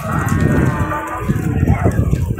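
Zebu cattle mooing: one long, drawn-out moo beginning at the start and fading out after about a second and a half.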